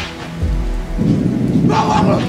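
A loud, deep, thunder-like rumble that swells about halfway through, under a film soundtrack.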